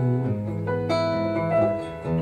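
Acoustic guitar playing a short instrumental phrase between sung lines, a few picked notes left ringing over a held chord.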